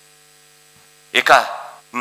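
Steady faint electrical hum, a set of even unchanging tones, heard in a pause of about a second before speech comes back.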